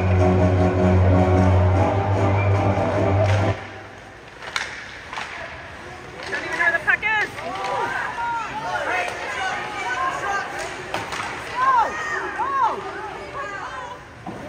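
Arena PA music with a heavy bass line that cuts off abruptly a few seconds in. After a few sharp knocks from the ice, spectators shout and cheer in high voices as play builds in front of the net.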